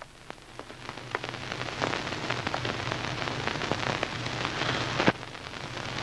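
A crackling hiss full of scattered small clicks over a steady low hum. It grows louder through the first few seconds, then drops suddenly after a sharp click about five seconds in.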